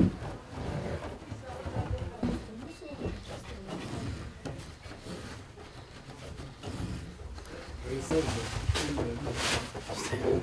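Low, indistinct voices of women talking in a room, with soft rustling as yarn is worked by hand at a kilim loom; a few short rustles come near the end.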